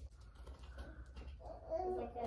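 Quiet room noise with faint light clicks and rustling, then a voice starting about one and a half seconds in.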